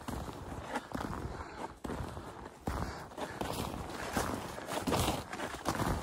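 Footsteps crunching through deep snow on snowshoes, about one step a second.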